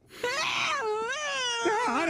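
A woman's high-pitched wailing, a cartoon character's voice-acted scream that wavers up and down in pitch, starting about a quarter second in.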